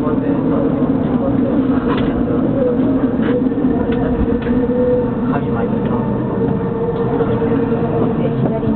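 Inside a subway car standing at a platform: a steady hum from the train's equipment with a held tone, under voices and a few faint clicks.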